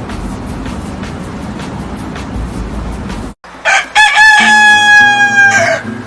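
Dance music with a steady beat cuts off about three seconds in, and a rooster then crows once, a long loud call and the loudest sound here, over soft music.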